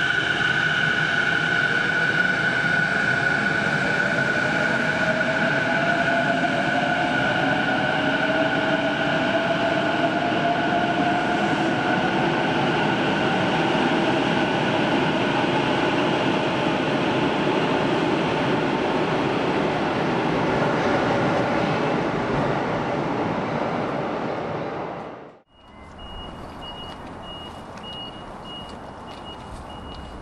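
Electric train pulling out of an underground station: rail and running noise with a motor whine that slowly rises in pitch as it gathers speed, then fades as it leaves. After a sudden cut near the end, a vehicle's reversing alarm beeps steadily, about twice a second, over distant traffic.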